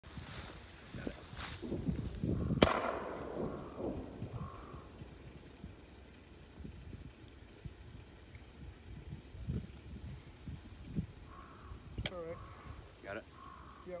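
A single sharp bang about two and a half seconds in, echoing away over about a second, amid a few smaller knocks and handling sounds. Brief low voices come near the end.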